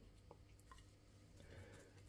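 Near silence: room tone, with a few very faint short ticks.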